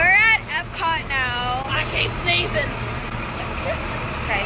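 A girl's high-pitched wordless voice: a quick rising squeal at the start, then a longer sliding note about a second in, over a steady low rumble.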